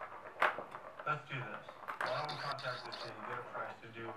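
Indistinct talk, with a single sharp knock about half a second in.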